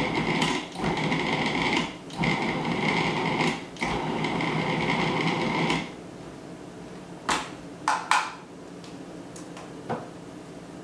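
Food processor pulsed several times, its motor whining in bursts of one to two seconds as it cuts cold butter cubes into flour. Near the end come a few sharp plastic clicks as the lid and bowl are unlocked and lifted off.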